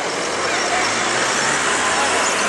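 Steady road traffic noise, an even, continuous rush with no distinct events.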